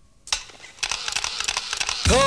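A break in a 1990s Bollywood film song. A single sharp click comes shortly after it starts, then a dense, crackly run of rapid clicks builds up until the band comes back in.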